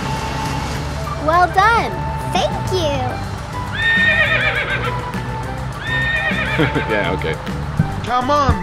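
A cartoon horse neighing twice, each a long high whinny that is held and then falls away at the end, over steady background music. A few quick rising and falling pitched glides come shortly before the neighs.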